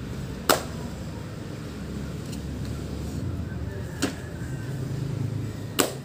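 Three sharp slaps of a person landing on a thin mat over concrete during burpees, about half a second in, at four seconds and near the end, over a steady low rumble.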